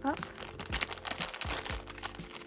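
Thin clear plastic bag crinkling as it is pulled and torn open by hand: a quick run of small sharp crackles.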